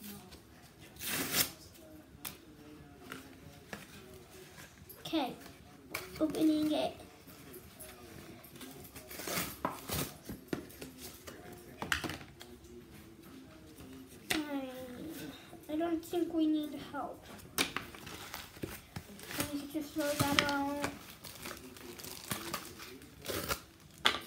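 Plastic toy packaging crinkling and tearing as it is handled and opened by hand, in many short, irregular crackles. A child's voice comes in briefly a few times.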